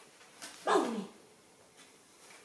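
A young monkey gives one short call that falls steeply in pitch, about two-thirds of a second in, just after a brief rustle.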